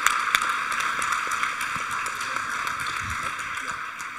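Audience applauding, a dense patter of many hands clapping that slowly fades toward the end.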